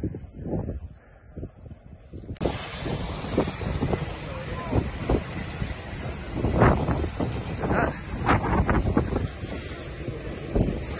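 Wind buffeting the microphone, starting abruptly about two seconds in and surging in gusts, with brief indistinct voices.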